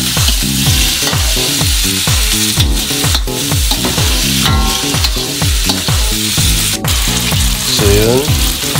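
Chicken liver and gizzard pieces with garlic and red onion sizzling steadily in oil in a stainless steel wok, stirred and scraped with a metal spatula. Under the sizzle runs a low pulse about twice a second.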